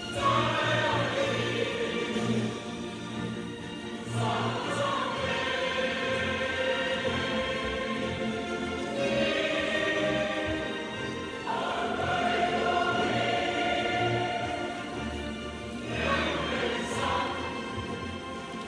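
A group of young girls singing a song together with instrumental accompaniment, in long phrases with held notes, a new phrase beginning every few seconds.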